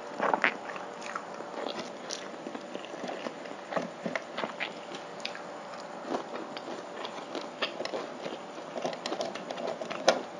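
Close-miked chewing of a mouthful of Samyang spicy stir-fried ramen noodles, with many small wet mouth clicks and smacks. A louder sound about half a second in, as the last of the noodles is sucked in.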